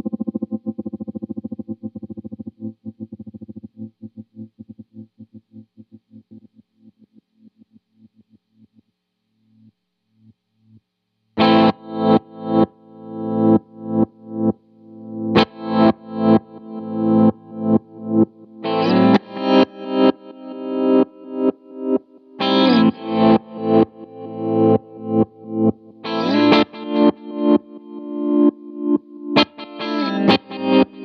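Electric guitar through a Lightfoot Labs Goatkeeper 3 tremolo/step sequencer: a held chord chopped into fast pulses fades away over the first several seconds. About eleven seconds in, distorted chords come in, cut by the sequencer into uneven rhythmic pulses, roughly two a second.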